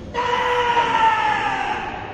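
A loud, high-pitched shout held for nearly two seconds, falling slightly in pitch: a karate kiai.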